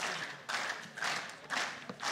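Steady rhythmic clapping, about two claps a second, each trailing off in a short echo.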